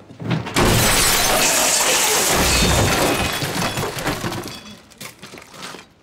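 A door slams, and at once a long crash of shattering glass and falling objects follows as the office breaks apart. It lasts about four seconds and tails off into scattered clinks of settling debris.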